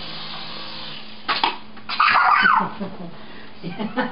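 Toy remote-control Apache helicopter's small rotor motor humming steadily, then stopping about a second in after it has landed on the table. Laughter follows.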